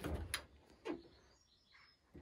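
Dometic caravan fridge-freezer door being pulled open: a few short clicks from the latch and door seal as it comes away, then a brief softer sound as the door swings.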